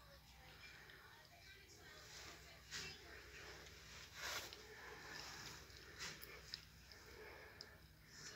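Near silence over a steady low hum, with a few soft breaths, the two clearest about three and four seconds in, and a couple of small clicks a little later.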